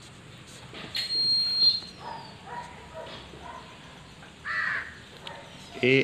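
Birds calling in the background: a louder call about a second in, fainter calls after it, and another clear call near the end.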